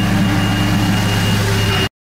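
Nissan 240SX's turbocharged KA24DET 2.4-litre four-cylinder idling, running a little rough with a misfire that the owner suspects comes from an exhaust leak or leaking couplers. The sound cuts off suddenly near the end.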